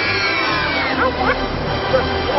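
Music playing over a group of young children laughing and calling out.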